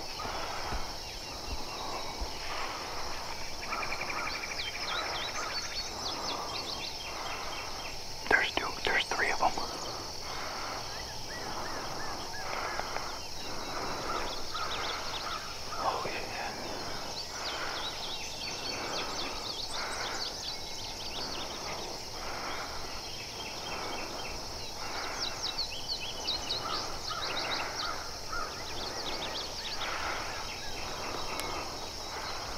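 Field ambience of insects and birds: a steady high-pitched insect drone with a pulsing call repeating about once a second, scattered bird chirps, and a louder burst of sharp calls about eight seconds in.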